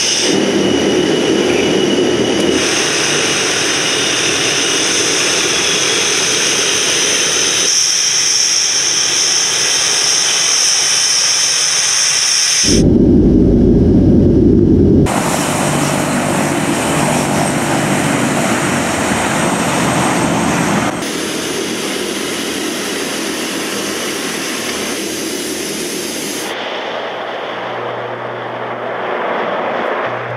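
Tupolev Tu-95's Kuznetsov NK-12 turboprop engines with contra-rotating propellers running loud and steady. The sound changes abruptly several times, with a high whine in the first half and a deeper, louder stretch about halfway through.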